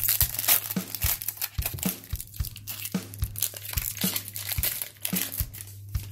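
Foil wrapper of a hockey card pack crinkling and tearing as it is ripped open by hand, in a dense crackle that is busiest in the first second.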